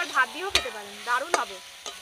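Long metal spatula stirring and scraping egg curry frying in a metal kadai, with the masala sizzling. It has two sharp clinks of the spatula against the pan, about half a second and 1.4 seconds in.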